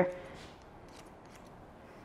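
A few faint, light snips of texturizing shears cutting hair.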